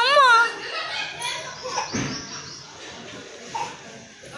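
Toddler's loud, high-pitched squeal right at the start, its pitch rising and then falling, followed by quieter babbling and small vocal sounds.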